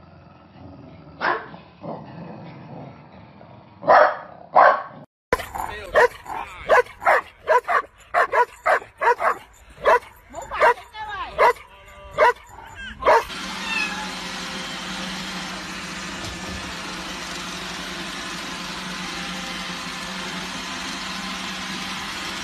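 Corgis barking a few times in short sharp yips, then a golden retriever barking in a fast run of about two barks a second for several seconds. After that comes the steady hum of a robot vacuum cleaner running.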